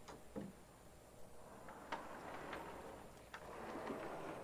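Faint, scattered clicks and soft knocks over a low hiss of room noise that grows slightly louder from about a second in.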